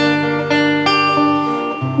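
Classical acoustic guitar played on its own with no voice: a chord struck at the start, then single picked notes about every half second ringing over a held bass note, with the bass moving to a new note near the end.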